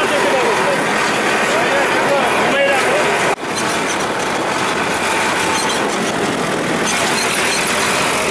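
Tractor's diesel engine running as it drives along a road, heard from on board, with people talking over it. The sound drops out for an instant about a third of the way in.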